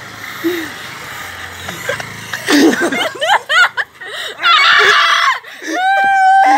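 People laughing hard in quick, high-pitched bursts after a shout, with a loud shriek about halfway through and a long high-pitched cry near the end.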